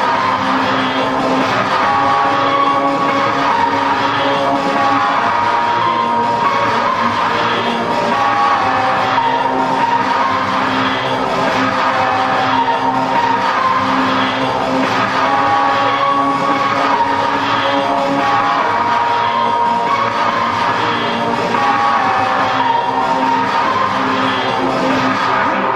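Martial industrial music: a slow melody of held notes over a dense, steady backdrop, at an even level throughout.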